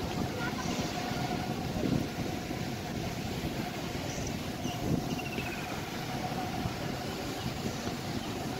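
Steady outdoor background noise with a low hum and a thin steady tone, and faint voices of people now and then.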